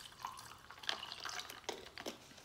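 A plastic water bottle being handled: a few short, scattered crackles and clicks of thin plastic.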